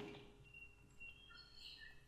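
Near silence between spoken sentences, with a few faint, brief high-pitched chirps in the second half.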